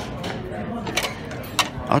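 A few scattered light clicks and clinks, about four in two seconds, over faint background voices in a buffet dining room.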